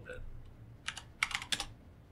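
Computer keyboard typing: a single keystroke, then a quick run of four or five keystrokes, entering a number.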